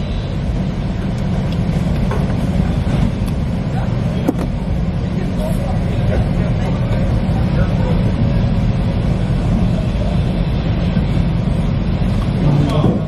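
Steady low engine rumble heard from inside a car on a ferry's enclosed car deck, the ship's engines and idling vehicles blending into one drone, with a single sharp click about four seconds in.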